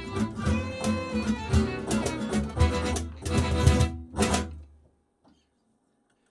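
Small gypsy-music band (violin, accordion, acoustic guitar, upright bass and cajon) playing the last bars of a tune live, ending on two loud accented chords about four seconds in, with the low bass notes ringing out briefly before silence.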